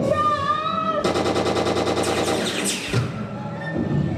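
Rapid staged machine-gun fire, a fast, even run of shots lasting about two seconds from about a second in, over the show's music.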